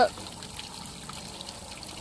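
Faint trickling and dripping of soapy water running off a wet canvas as a soap-laden sponge is set against it.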